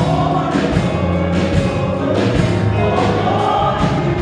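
Gospel choir singing an upbeat song with a live band, a regular beat marked about twice a second.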